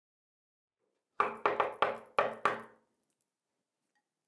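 Knocking on a door: six quick knocks in an uneven rhythm, starting about a second in and lasting about a second and a half, each dying away with a short ring.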